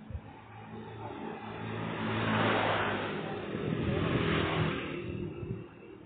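Two motorcycles passing close by one after the other, engine and tyre noise swelling and fading. The first is loudest about two seconds in and the second a couple of seconds later.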